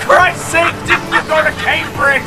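A person's voice, in quick syllable-like bursts, over steady low sustained tones.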